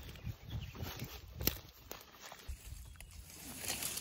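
Footsteps through grass and weeds, with plants brushing and a few irregular light snaps, the sharpest about a second and a half in.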